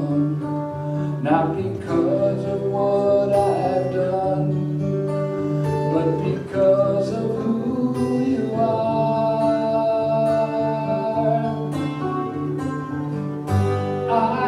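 A man singing a slow worship song, accompanying himself on a strummed acoustic guitar, with one long held note in the middle.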